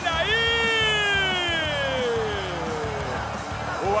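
Football commentator's long drawn-out goal shout: one held call sliding slowly down in pitch, over background music.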